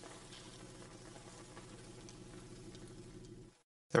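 Faint steady hiss with a low hum from laboratory apparatus; it cuts off abruptly near the end.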